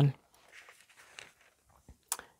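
Faint rustling and a few soft ticks of paper as the pages of a book are handled.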